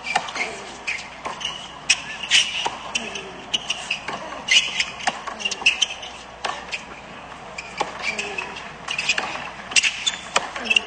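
A tennis rally on a hard court: a string of sharp pops from racquet strikes and ball bounces, coming irregularly about every half second to a second.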